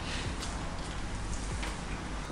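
Faint chewing of mouthfuls of a soft burger, with a few small soft clicks, over a steady low room hum.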